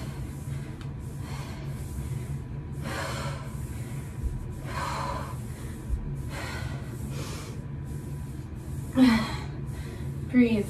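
A woman breathing hard from exertion: short, sharp breaths in and out about once a second, with a louder voiced exhale about nine seconds in.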